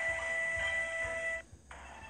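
Soft background music of several steady held tones from a children's storybook app, cutting off suddenly about a second and a half in, followed by a brief dip and fainter tones.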